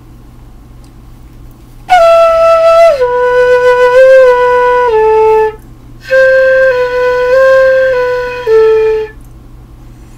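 White PVC transverse flute playing two short phrases of stepped notes, starting about two seconds in. The first phrase steps down from a high note through several lower ones; the second moves back and forth between two neighbouring notes before dropping a step.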